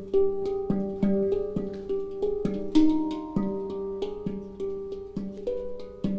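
Hang drum played by hand: pitched notes struck about twice a second, each ringing on under the next, with light finger taps between them.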